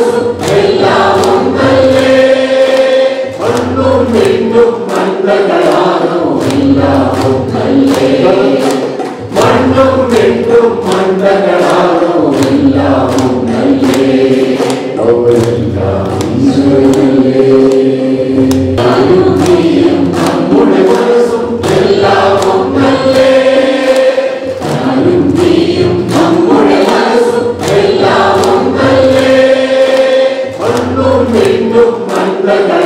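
A roomful of people singing together in unison, with hands clapping a regular beat throughout.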